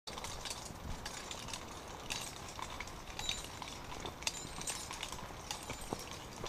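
Footsteps on a steep dirt trail covered in dry leaves and loose stones: irregular crunches and scuffs, one every fraction of a second.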